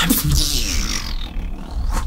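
Beatboxing: a low bass drone under a vocal sound that slides down in pitch over the first second, then thins out and drops off near the end.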